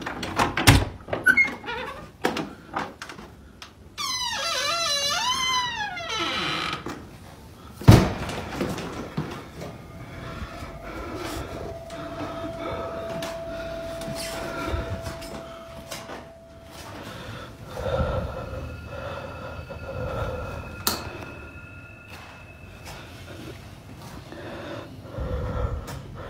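A door hinge squealing with a wavering pitch for about two seconds, among knocks and thuds in a small room. The loudest thud comes about eight seconds in, and faint steady tones hum later on.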